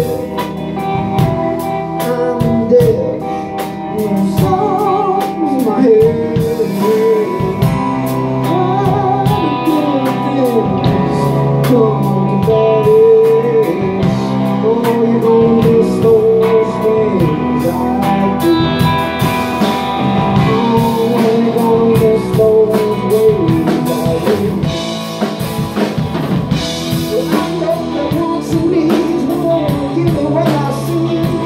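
A live blues-rock band playing: two electric guitars, electric bass and a Gretsch drum kit, with a male lead vocal.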